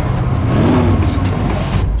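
A taxi cab's engine revving as the car bears down, a deep rumble with the pitch rising and falling once around the middle.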